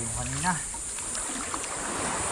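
A man's voice, held on one pitch and then rising sharply to a short loud call about half a second in, followed by steady sloshing and splashing of shallow sea water as people wade, dragging a seine net.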